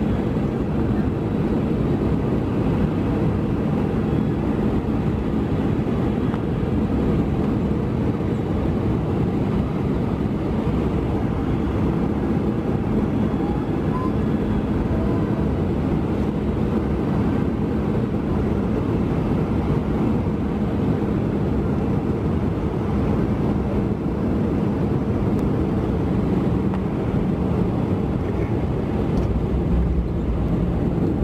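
Steady cabin roar of an Airbus A320 on final approach, heard from a window seat: engine noise and airflow, with a faint steady hum underneath. The low end shifts just before the end as the jet comes over the runway.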